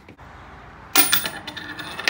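A quarter thrown down onto a plywood tabletop lands about a second in with a sharp metallic ringing click, then bounces and clatters quickly against the small wooden cornhole board before settling.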